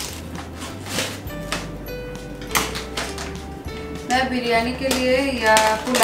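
Background music with a steady bass line and held notes, a pitched voice coming in about four seconds in.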